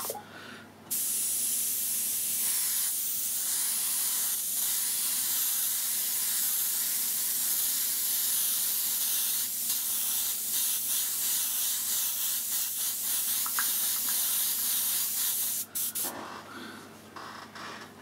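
Iwata airbrush spraying a light dusting of thinned paint: a steady hiss of air and paint that starts about a second in and cuts off near the end, followed by quieter, uneven spurts. The airbrush has a slight blockage in it.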